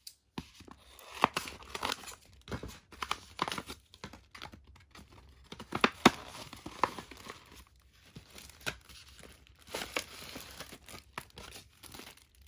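Plastic and paper packaging crinkling, rustling and tearing in irregular bursts as cellophane-wrapped craft embellishments are handled and pulled out of a box.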